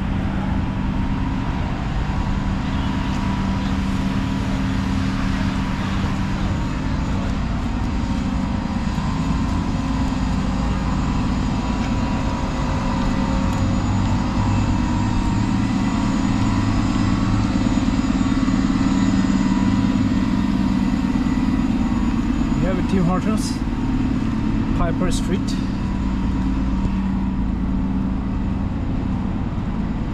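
Steady downtown street traffic: a low, even engine hum from vehicles idling and running on wet, snowy roads. A few short ticks and brief sounds come through a little past the middle.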